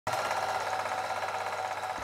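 Rapid, steady mechanical clatter of a film projector running, about twenty clicks a second. It starts abruptly.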